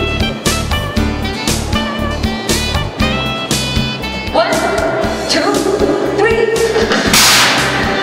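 Background music with a steady beat, and a loud crash near the end.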